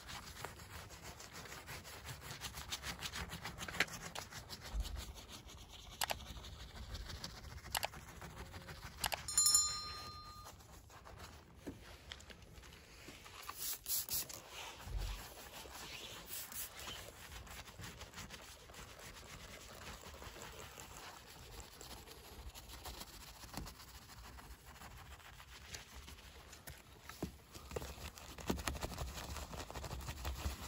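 Faint scrubbing of a small soft-bristled detailing brush working snow foam over car trim and a badge, with scattered light clicks. A short high ringing tone about ten seconds in is the loudest moment.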